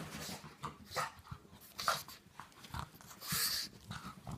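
A pug's short, irregular snorts and breaths as it roots in its fabric dog bed for its toy, with a louder hissy breath near the end.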